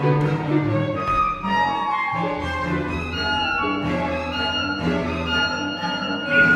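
Small chamber ensemble playing an instrumental passage, bowed strings holding sustained notes in the low and middle register with higher notes changing over them.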